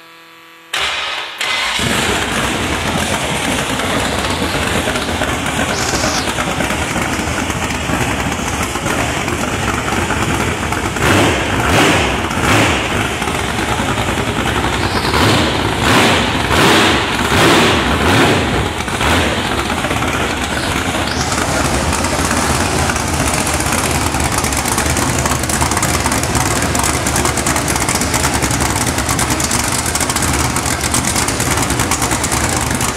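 A 383 stroker small-block Chevrolet V8 with a solid roller cam fires up about a second in and runs pretty loud on open headers, idling high because it is cold. In the middle it is blipped several times with short revs before settling back to a steady idle.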